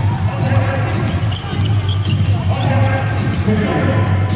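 A basketball bouncing on a hardwood court, with several short, high-pitched sneaker squeaks from players running. Arena music and crowd voices play underneath.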